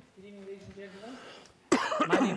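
A man's voice holding a steady, drawn-out hum-like 'mm' for about a second, then a sudden loud cough about three-quarters of the way in as he prepares to speak.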